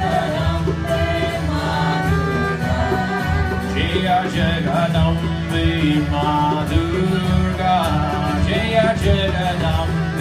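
Kirtan music: a twelve-string acoustic guitar strummed over the sustained reed chords of a harmonium, with voices singing a devotional chant.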